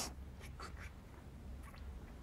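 Faint sounds of a man drinking from a small hot sauce bottle: a few soft, short clicks over a low steady hum.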